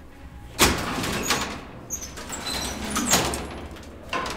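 Collapsible steel scissor gate of a 1929 ASEA freight elevator car being slid by hand, rattling as it goes. A sharp metal clank comes about half a second in and another near three seconds, with brief metallic ringing.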